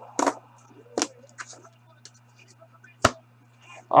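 A few short knocks and clicks from handling at a desk, the sharpest one about three seconds in, over a steady low electrical hum.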